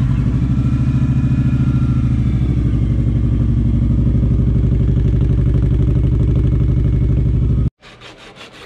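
2019 Kawasaki Vaquero's V-twin engine running steadily at idle, with an even, pulsing exhaust beat. It cuts off suddenly near the end.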